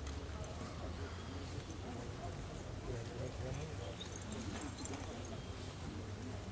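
Arena ambience of horses working cattle on soft dirt: indistinct voices of onlookers over a steady low rumble, with soft hoofbeats of the horses on the dirt.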